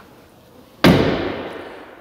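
The rear swing gate of a 2023 Jeep Wrangler Rubicon, carrying the spare tire, is swung shut once about a second in, with a single solid slam that rings out over about a second; it shuts really nice.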